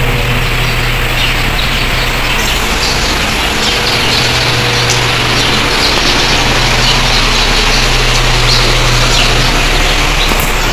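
Birds chirping now and then over a steady wash of outdoor noise with a low hum.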